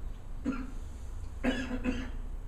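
A man clearing his throat or giving a short cough, twice: a brief one about half a second in and a longer one near the end.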